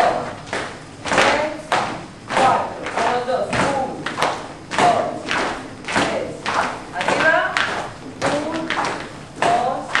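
A group of flamenco dancers beating out a steady rhythm, a sharp hit about every two-thirds of a second, with voices over it.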